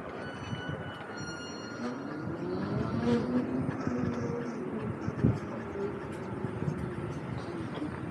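Zero SR/F electric motorcycle moving slowly. The motor's whine rises in pitch about two seconds in, holds, then drops away as the bike slows, over tyre and wind noise.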